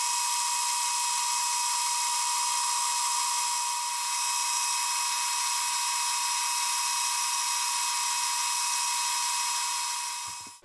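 Metal lathe running steadily with a high-pitched whine as it turns a cast brass hammer head, dipping slightly partway through and fading out at the end.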